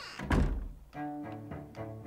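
A wooden door shutting with a single heavy thud, followed about a second in by cartoon underscore of low string notes played one after another.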